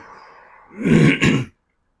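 A man clearing his throat with a short cough, two rough rasps about a second in, after which the sound drops out completely.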